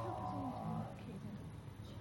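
A man's voice holding a long, steady hesitation sound, a drawn-out vowel like "so…" or "uhh", which fades out about a second in. Low room hum follows.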